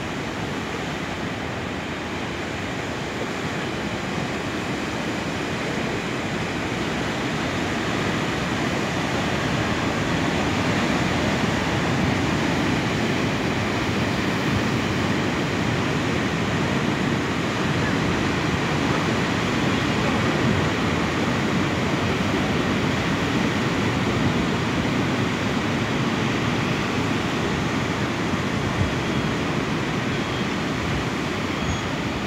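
Ocean surf breaking on a rocky shore: a steady rush of crashing water that grows louder over the first ten seconds or so, then holds.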